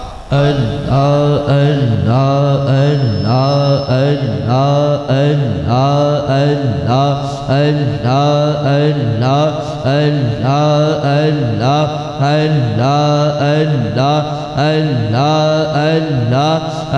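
A man's voice chanting "Allah, Allah" over and over in a steady rhythm, about one "Allah" a second, as a zikr (devotional remembrance chant).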